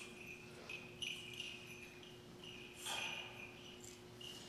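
Small liturgical bells jingling faintly on and off, in short shakes, over a steady low hum.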